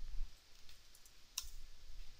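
A single sharp click at the computer about one and a half seconds in, as a web address is pasted and opened in the browser, over a faint low hum.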